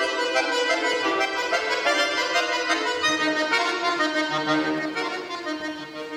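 Bayan (Russian chromatic button accordion) playing solo: a busy stream of quick notes, then from about halfway held chords over low bass notes, growing softer near the end.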